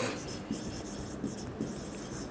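Marker writing on a whiteboard: a run of short, light scratching strokes broken by brief pauses.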